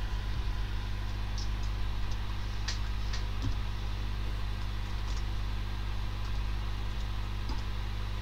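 Steady low electrical hum with background hiss, and a few faint clicks from computer input as numbers are typed into a calculator.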